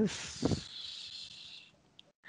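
A man's drawn-out hiss of breath through the teeth, about a second and a half long, with a short voiced sound near the start: a hesitation while he decides on a score.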